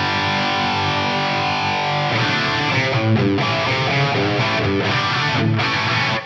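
Distorted electric guitar played through a Fractal Audio Axe-Fx III's Mark IV amp model, with gated reverb, a detuned Plex delay and a short multi-tap delay widening it. A held chord rings for about two seconds, then a run of picked notes and chords follows.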